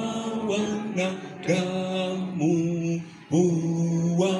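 Slow, chant-like singing by a single voice, each note held for about a second, sliding up into the note, with short breaks between phrases.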